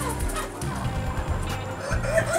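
A flock of native deshi chickens clucking, with background music underneath.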